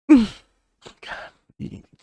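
A person sighs once, a short breathy exhale falling in pitch, followed by a couple of faint breaths.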